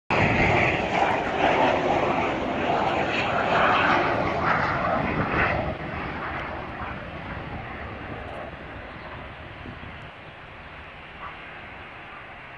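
Airplane flying over with a loud, rushing engine noise that fades after about five and a half seconds as it moves away.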